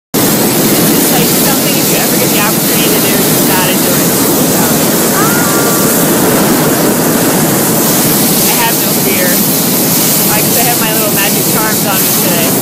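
Hot air balloon's propane burner firing, a loud steady roar, with faint voices under it.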